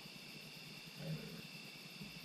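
Steady insect chirring in a field at dusk, with a short low-pitched sound about a second in.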